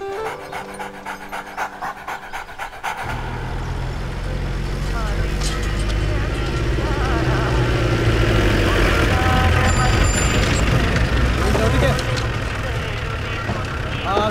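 A utility jeep's engine running low and steady under village-street noise with people's voices. It comes in suddenly about three seconds in and grows louder toward the middle, with a brief high ring near ten seconds. Before it there is a fast run of short ticks over a low held tone.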